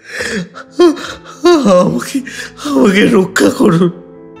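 A man's voice wailing in pain: bending, strained cries broken by harsh, noisy breaths.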